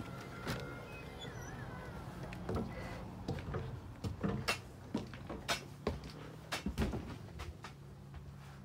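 Scattered knocks and clicks of someone climbing the entry steps into a motorhome and moving about inside, over a steady low hum.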